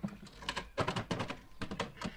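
A rapid, irregular run of clicks and taps, like keys being struck.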